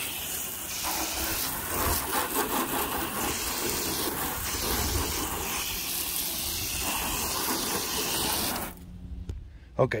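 Water spraying from a garden-hose nozzle (a foam cannon with its soap bottle removed) against a pickup truck's doors, rinsing the soap off. It is a steady hiss of spray that cuts off abruptly near the end.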